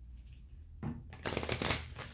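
A deck of oracle cards being shuffled by hand: a quick run of many small card flicks, starting about a second in.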